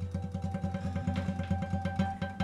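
Taylor acoustic guitar played with rapid, evenly repeated strokes on a low chord.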